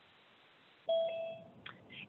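A short electronic beep or chime, like a video-call notification, sounding about a second in: two steady tones overlapping for about half a second after a moment of dead silence.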